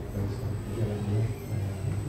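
A man talking into a handheld microphone over a low, steady rumble; the words are not clear.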